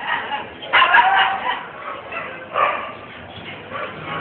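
A caged turkey gobbling: two rough, rattling bursts, one about a second in and a shorter one near the middle.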